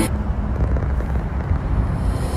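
Steady low rumble of a moving sightseeing bus, engine and road noise heard from on board.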